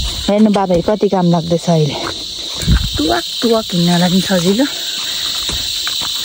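Steady high-pitched insect chorus with no break, under a woman talking.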